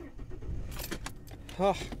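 Keys jingling and clicking at a car's ignition, with the car's engine running as a steady low rumble underneath.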